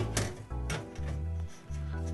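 Background music: held chord tones over a bass line that changes note about every half second.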